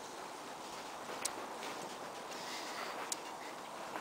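Quiet outdoor background hiss, with two faint short clicks, one about a second in and one about three seconds in.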